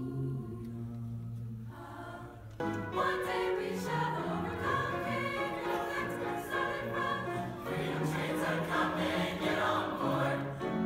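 Mixed choir singing in Swahili. Soft low held notes come first, then the full choir comes in louder about two and a half seconds in.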